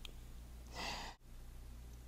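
A woman's single breathy exhale, the tail end of a laugh, about a second in, over a faint steady low hum. The sound cuts off suddenly just after.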